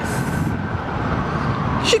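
Steady low rumble of road traffic, even in level throughout.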